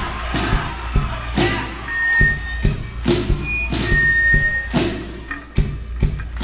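Rock band playing an instrumental passage: a steady drum beat with kick-drum thuds and cymbal crashes about twice a second, and a high held note sounding twice near the middle.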